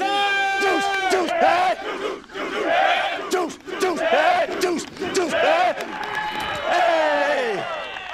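Several football players yelling and hollering over one another, opening with one long held yell for about a second.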